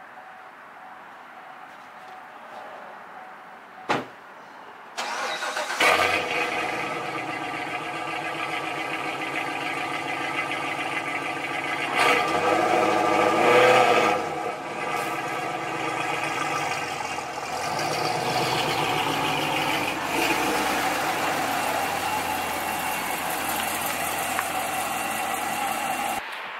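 A car door thumps shut, then the C7 Corvette Stingray's 6.2-litre V8 starts about five seconds in with a loud flare, settles into steady running with a brief rev a few seconds later, and keeps running as the car pulls away.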